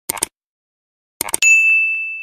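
Subscribe-button sound effect: a quick double mouse click, then more clicks about a second later and a single bright bell ding that rings on and slowly fades.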